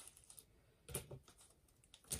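Mostly near silence, with a few faint clicks and rustles about a second in as small plastic model-kit parts are handled in a clear plastic bag.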